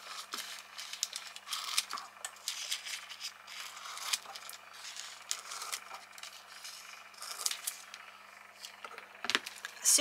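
Scissors cutting through a sheet of metallic toner foil: a run of small, irregular snips and crinkles as the foil is cut and handled, with a slightly louder knock near the end.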